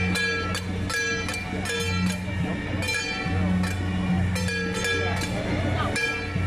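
Metal percussion of a temple procession struck at an even beat of roughly two strokes a second, each stroke ringing briefly, over a steady low hum and the chatter of the crowd.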